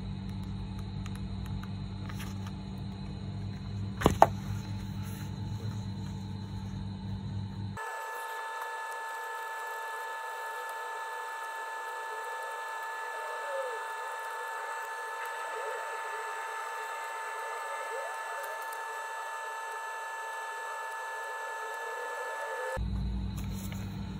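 Room hum with a single sharp click about four seconds in. After that, soft background music made of held, steady tones runs for most of the rest.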